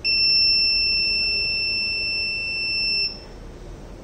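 Electronic buzzer on an Arduino fingerprint door lock sounding one continuous high-pitched beep for about three seconds, then cutting off sharply. It is the unauthorized-access alarm for a fingerprint that was not found.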